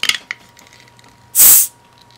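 The metal bottle-opener base of a Hot Wheels Carbonator toy car catching on the crown cap of a glass soda bottle with small clicks, then a brief, loud hiss about a second and a half in as the cap's seal breaks and the carbonation escapes.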